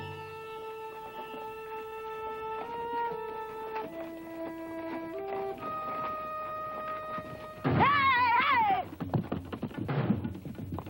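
Film score of long held notes that step up and down in pitch. About eight seconds in, a horse whinnies loudly, one wavering call falling in pitch, and drum-like thuds follow.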